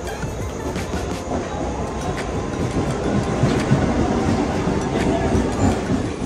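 Electric suburban local train running along the platform, its wheels clattering over the rail joints, with a faint steady whine from about a second in.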